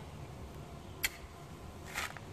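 A single short, sharp click about a second in, over faint steady background noise.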